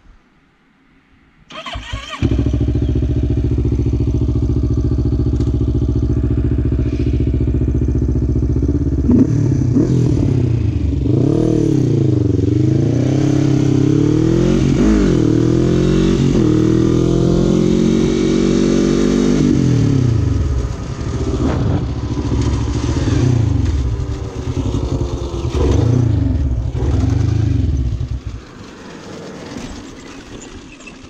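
Quad (ATV) engine starting about two seconds in, then idling steadily. It then revs up and down repeatedly as the quad rides off, accelerating and easing off. Near the end the engine sound drops away sharply.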